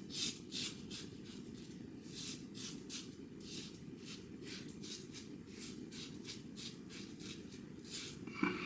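Above The Tie S2 open-comb double-edge safety razor scraping through lathered stubble on the cheek and jaw in short, quick strokes, roughly three rasps a second.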